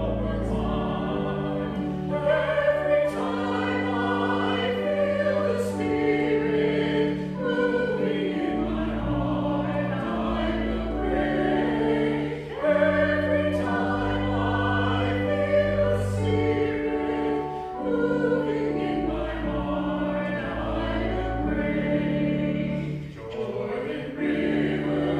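A choir singing a hymn over sustained low chords, in phrases, with short breaks about halfway through and near the end.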